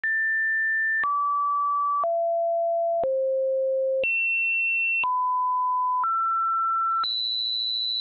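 Computer-generated pure sine tones, a new pitch each second for eight seconds, jumping unevenly between high and middle pitches, with a faint click at each change; the highest tone comes last.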